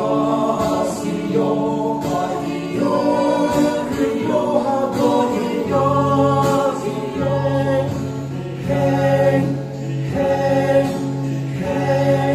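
A small mixed group of male and female voices singing together in harmony, accompanied by a strummed acoustic guitar.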